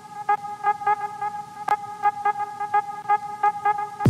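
A steady, horn-like pitched tone, pulsing quickly and regularly, with one sharp click partway through.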